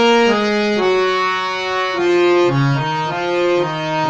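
Harmonium played by hand, its reeds sounding continuously as a melody of held notes moves from key to key about every half second over a lower note beneath it.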